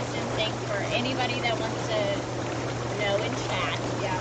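Inflatable hot tub's bubble jets running: water churning and frothing steadily over a constant low motor hum.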